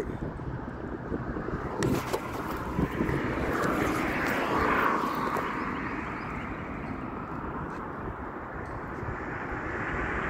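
A distant engine's rushing noise passing by, swelling to its loudest about four to five seconds in and then slowly fading, over low wind rumble on the microphone. There are a couple of short handling clicks near the start.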